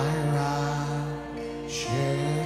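Live worship music: a man's voice holding a long sung note over acoustic guitar and sustained chords.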